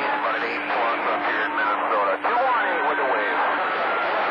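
CB radio receiving channel 28 skip: distant, overlapping voices come through too garbled to make out, in the receiver's thin, narrow-band audio. A steady low hum runs under them and stops near the end, and a thin steady whistle starts about halfway through.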